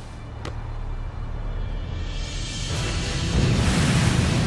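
Tense film score building up, with a deep rumble and a rush of water swelling from about three seconds in as something large surges out of the sea.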